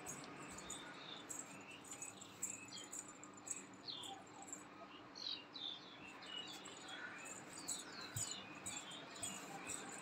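Small birds chirping faintly: short, high, falling chirps scattered irregularly, several close together at times, over a steady faint hiss.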